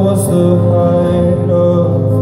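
Live band performance: a male lead vocalist singing a long held note over strummed acoustic guitar and the band, loud and steady.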